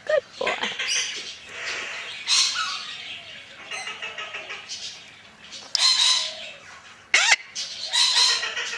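Red-sided Eclectus parrot making short, harsh squawks and chattering calls, a few seconds apart, with the sharpest about three quarters of the way through.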